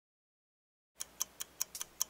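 Ticking sound effect for a 'loading' intro animation: silence, then about a second in a crisp clock-like ticking starts, about five ticks a second.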